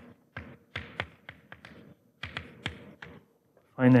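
Chalk writing on a blackboard: a quick run of sharp taps and short scratches as letters are written, in two bursts with a brief pause about two seconds in.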